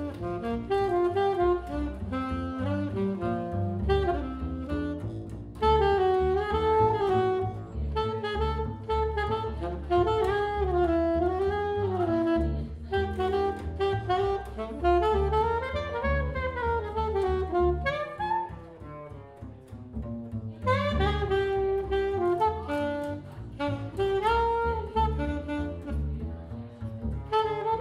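Jazz duo of a 1968 Selmer Mark VI alto saxophone and a plucked upright bass: the saxophone plays a swinging melody with bends and slides while the bass keeps a steady line of plucked notes underneath. About two-thirds of the way through the music drops quieter for a couple of seconds before the saxophone comes back in strongly.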